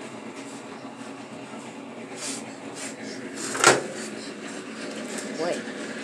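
Steady kitchen room hum with a few light clicks and one sharp knock a little past halfway, as the baking tray of cookies is handled on the way to the oven.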